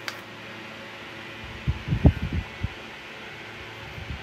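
AC Infinity 6-inch oscillating clip-on fan running on its top speed while oscillating, a steady rush of air with no speeding up or slowing down as it turns. About two seconds in, a few low gusty thumps of its airflow buffet the microphone as the head sweeps toward it.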